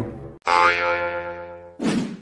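A comedic sound-effect sting: a sudden pitched tone about half a second in that fades away over a second or so, then a short burst near the end before the sound cuts off.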